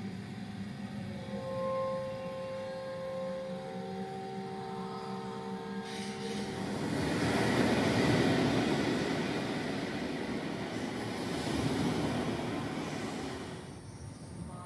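Soundtrack of a gallery video installation. A few steady held tones play over a low hum, then give way about six seconds in to a broad rumbling noise that swells twice and fades just before the end.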